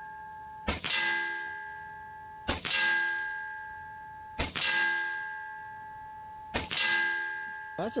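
Diana XR200 .22 PCP air rifle firing four shots about two seconds apart. A fraction of a second after each report the pellet strikes downrange, and a ringing clang dies away over about a second.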